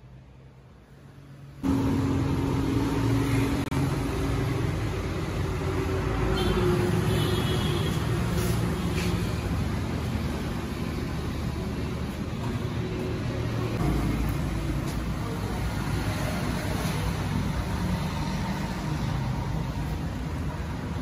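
Steady engine rumble that starts abruptly about two seconds in and runs on loud and even.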